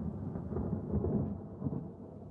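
Rolling thunder: a continuous low rumble that swells and eases.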